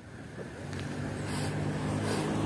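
Low steady engine hum, like a passing motor vehicle, growing gradually louder after about half a second.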